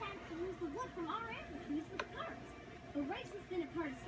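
Speech from cartoon dialogue playing in the background, with one sharp click about halfway through.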